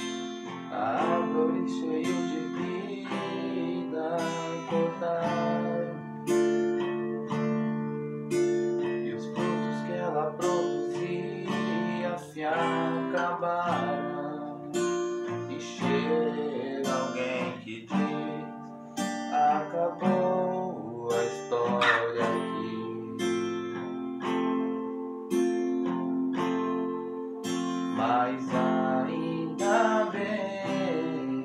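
Acoustic guitar strumming full barre chords (F, then B♭, then C) in a down-up-down pattern at a slowed-down tempo.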